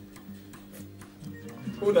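Light, regular ticking, a few ticks a second, over faint steady low tones; a voice breaks in near the end.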